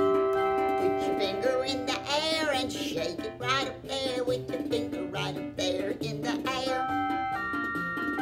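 Electronic chord instrument, an Omnichord, playing a song accompaniment: held chords that change every second or so, with strummed runs rippling over them.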